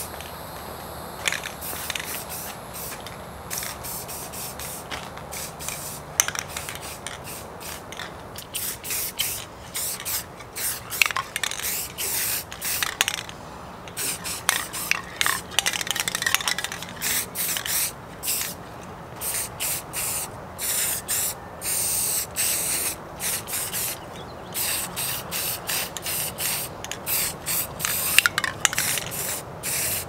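Aerosol spray paint can spraying red paint onto hand pump parts in many short bursts of hiss, each under a second long, that come more often from about nine seconds in.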